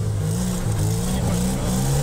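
Classic Lada saloon's four-cylinder engine running under throttle while the car slides sideways on snow, its pitch rising and falling as the revs change.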